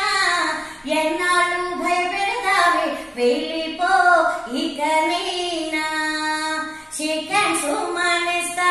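A woman singing a Telugu parody song in long, held phrases, with brief pauses between them.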